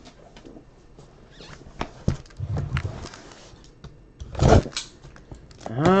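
A cardboard case box being handled and moved onto the table: scattered knocks, scrapes and rustles, with the loudest thump about four and a half seconds in.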